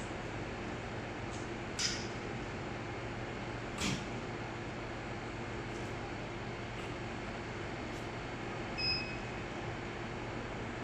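Steady hum of a handheld fiber laser welding machine and its water chiller running as the laser powers up and charges its capacitors. Two brief clicks, and a short high beep near the end.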